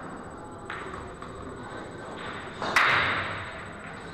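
Pool balls knocking on a pool table after a shot: a few light clicks and cushion knocks, then a much louder sharp knock with a short ringing tail a little under three seconds in.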